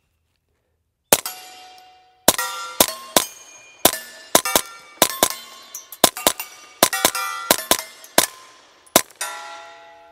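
Ruger PC Charger 9mm pistol firing through a screwed-on Atlas suppressor, a quick string of muffled, sharp shots beginning about a second in, with steel plates ringing after hits. The shots come in quick pairs and singles, with the ringing of the steel lingering between them.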